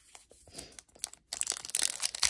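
Trading-card pack wrapper handled and torn open: a few faint taps as the pack is picked up, then dense crinkling and tearing of the wrapper from about a second and a half in.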